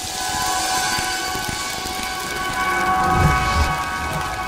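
Sound design from a TV promo: a swelling whoosh of noise under several held synth tones, with low booming hits about three seconds in.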